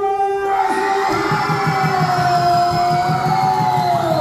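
One long, held, amplified vocal shout over a PA that slides down in pitch right at the end. Underneath it a steady beat of about four to five pulses a second comes in after about a second, with a crowd cheering.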